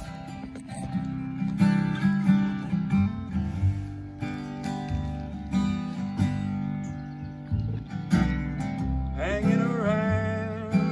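A live acoustic band playing: strummed acoustic guitar over upright bass and drums. A voice starts singing about nine seconds in.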